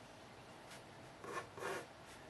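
Pencil scratching on paper: a few short, faint strokes, mostly in the second half.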